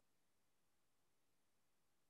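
Near silence: a pause between speech, the audio gated to almost nothing.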